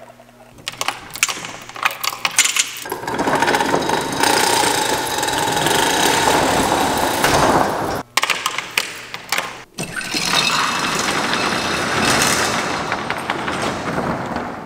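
A steel roll-up door being lowered by its hand-chain hoist: the chain rattles through the hoist and the corrugated slats clatter as the door rolls down. The noise starts as separate clatters, then runs in long stretches, with brief pauses about eight and ten seconds in.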